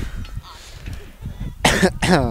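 A person coughing close to the microphone, one loud cough near the end, with a sharp click at the very start.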